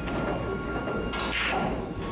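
A pool cue striking the cue ball, a sharp click a little over a second in, with clicks of the ball over background music.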